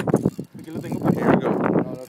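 People talking, with no other sound standing out.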